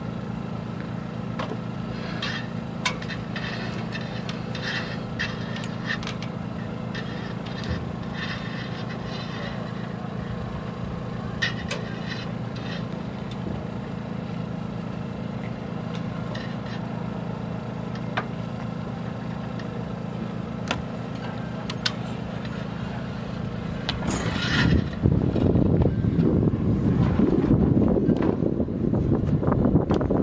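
A steady low engine hum, like a motor idling, with a few light clicks and taps over it. Near the end a louder, rough low rumble covers it.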